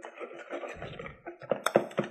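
A whisk stirring runny pancake batter in a plastic mixing bowl, a wet scraping with a quick run of sharp taps against the bowl near the end.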